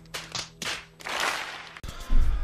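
A few separate claps, then a short burst of applause.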